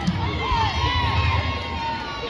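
Audience cheering and shouting, many high voices yelling and whooping at once, with calls that slide up and down in pitch.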